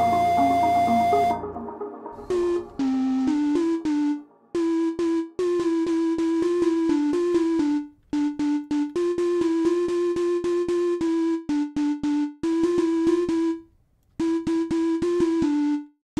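A fuller synth passage with bass stops about a second in. Then single Ableton Operator synth notes sound again and again around the same pitch, some short and some held, each starting with a sharp click, as the patch's pitch envelope and decay are adjusted.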